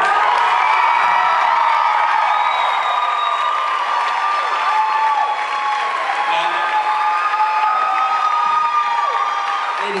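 Theatre audience cheering and applauding loudly, with long, high whoops and screams from many people held over the clapping.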